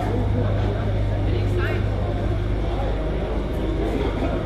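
Radio-controlled model tractor running with a steady low drone as it works through sand, under the chatter of people close by.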